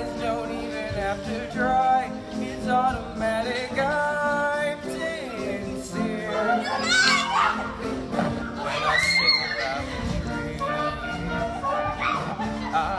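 A stage musical number: young voices singing over band accompaniment in a large hall, with high rising cries about seven seconds in.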